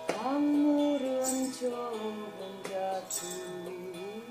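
A woman singing long, gliding notes of a melody over a steady drone accompaniment. The voice swoops up into a loud held note at the start. A light jingle sounds about every two seconds.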